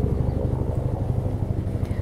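A steady low mechanical rumble, as of a motor running, with no change over the two seconds.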